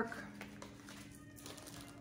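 A faint, steady low hum over quiet room tone.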